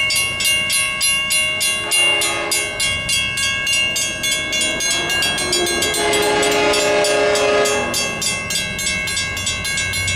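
A Western-Cullen-Hayes mechanical railroad crossing bell rings steadily at about four strikes a second. Over it, the horn of an approaching LIRR DE30AC diesel locomotive sounds a short blast about two seconds in and a long blast from about halfway to near the end.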